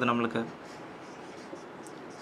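Marker pen drawing on a whiteboard, faint short scratching strokes, after a man's voice trails off in the first half second.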